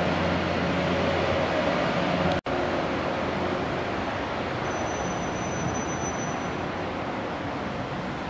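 A steady low engine hum over a constant rushing noise. The sound drops out for an instant about two and a half seconds in, and after that the hum is gone and only the rushing noise remains.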